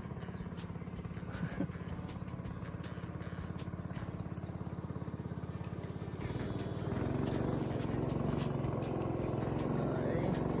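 A small boat engine running steadily across the water with a fast, even throb, growing louder about six seconds in.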